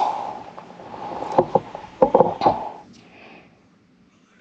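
Camera-handling rustle with several short knocks and bumps about a second and a half to two and a half seconds in, as the camera is moved about over wooden porch boards, then fading to quiet.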